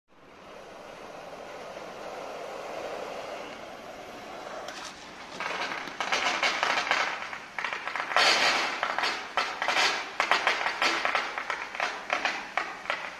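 Water rushing under pressure from a fire hydrant post as its valve is opened for a flow test: a steady hiss at first, then from about five seconds in a louder, irregular spraying and splashing as the hose's jet shoots high into the air.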